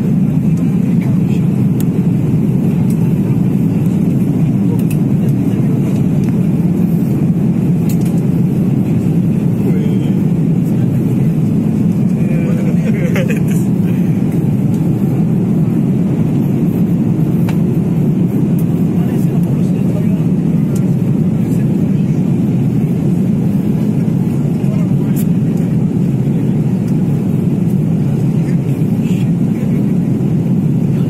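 Jet airliner on its takeoff roll heard from inside the passenger cabin: loud, steady, deep engine and rolling noise with no let-up.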